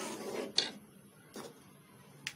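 A spoon stirring thick firni in an aluminium pot: a wet scraping swish, a sharp scrape against the pot about half a second in, and a faint tap about a second later.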